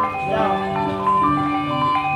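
Javanese gamelan accompaniment to a wayang kulit fight scene: a quick stream of struck, ringing bronze metallophone notes over lower sustained tones.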